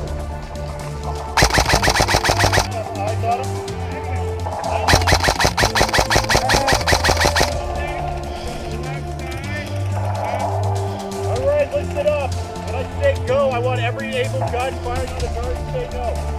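Airsoft rifle firing two rapid full-auto bursts over background music: a short burst about a second and a half in, then a longer one of about two and a half seconds.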